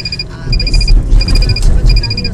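Level-crossing warning signal sounding: short strings of rapid high electronic pips, repeating about every 0.7 s. Under it, a car's engine and tyre rumble grows louder about half a second in.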